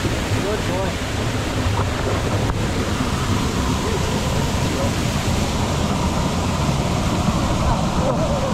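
Waterfall and fast-flowing stream water rushing over rocks: a loud, steady noise.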